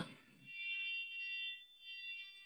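Background score: a brief high chord of several steady tones sounding together, held for about a second and a half before fading.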